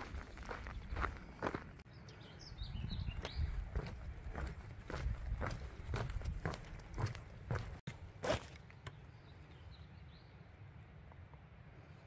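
A hiker's footsteps, about two a second, on a dirt trail and then on a wooden boardwalk, fading to quieter steps for the last few seconds.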